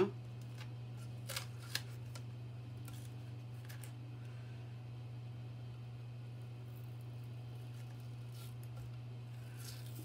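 A few faint crinkles and clicks of painter's tape being peeled and bunched up off the back of a resin-coated glass tray, two of them clearer about a second and a half in. A steady low hum runs underneath.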